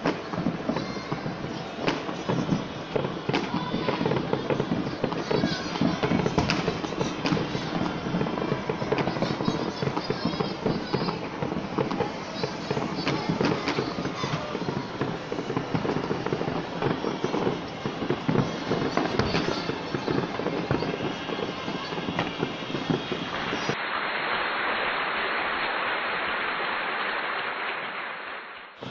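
Fireworks going off in rapid succession over a city: many overlapping bangs and crackles above a continuous din. About four seconds before the end, the sound gives way to a steady, muffled hiss.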